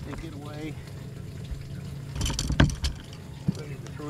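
Clunks and knocks of a bass boat's pedestal seat being lifted and its metal post pulled out of the deck socket, with a cluster of knocks about two and a half seconds in and a single click near the end.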